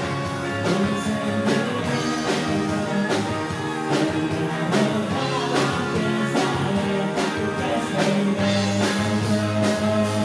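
Live rock band playing: electric guitars, bass guitar, drum kit with a steady beat, and keyboard.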